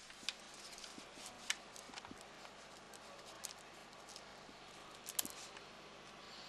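Low background hiss with a handful of sharp clicks or taps, the clearest about a third of a second in, at a second and a half, and just after five seconds.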